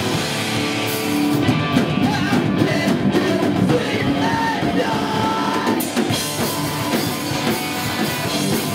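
Live rock band playing: electric guitars, bass guitar and drum kit, with a shouted lead vocal over them.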